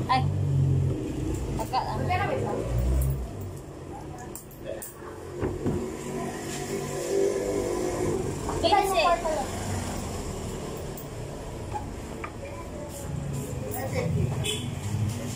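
A motor vehicle running by, with a low rumble in the first few seconds and a hum a little past the middle, and short bursts of voices about two seconds in and again near nine seconds.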